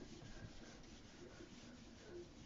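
Faint rubbing of a felt eraser block wiping dry-erase marker off a whiteboard.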